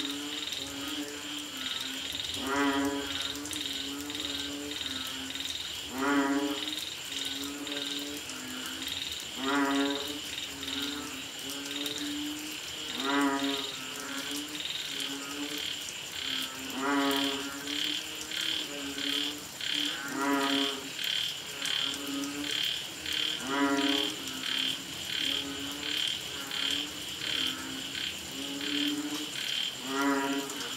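Banded bullfrogs (Asian painted frogs) calling: a deep moaning call about every three to four seconds, with shorter low notes in between. A steady, rapidly pulsing, high-pitched chorus runs underneath.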